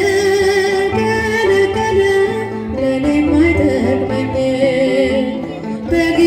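Ethiopian Orthodox hymn (mezmur) sung by a woman, her long held notes wavering over instrumental accompaniment with a steady bass.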